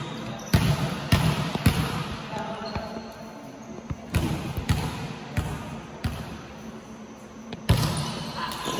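A volleyball bounced on the gym floor several times, about one or two bounces a second in two short runs, then a sharper hit near the end as the ball is served, with background voices in the hall.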